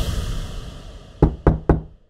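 A transition whoosh fading away, then three quick knocks about a quarter second apart as the logo sound, after which the audio stops abruptly.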